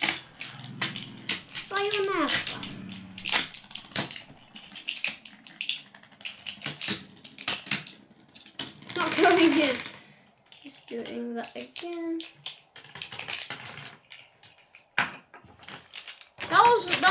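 Beyblade spinning tops clattering in a white tray: a rapid, uneven run of sharp clicks and knocks as the spinning tops strike each other and the tray's rim. A child's wordless voice cuts in briefly, about two seconds in and again around nine seconds.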